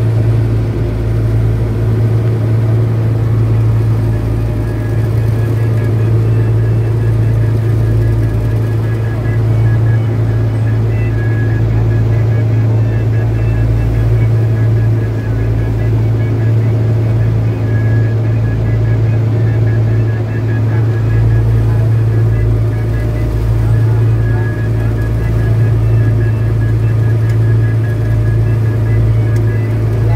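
A small fishing boat's engine running steadily while the boat is underway, a deep constant drone with no change in pace.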